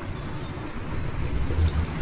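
Water splashing and swirling as a hooked perch is drawn across the surface and into a landing net, over a low steady rumble, getting a little louder toward the end.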